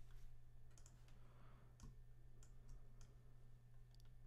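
Near silence: a low steady hum with about eight faint, scattered clicks of a computer mouse and keyboard being worked.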